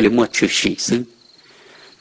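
A man's voice narrating for about a second, then a pause in which a faint, steady high chirring of crickets carries on underneath.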